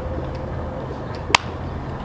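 A steady low hum, with one sharp click about two-thirds of the way in.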